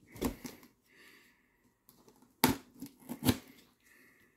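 Utility knife blade cutting through packing tape and cardboard at a box corner: a short scraping cut at the start, then two more in the second half after a quiet pause.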